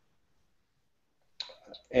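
Silence, then a short, sharp mouth click about a second and a half in as a man gets ready to speak; his speech starts at the very end.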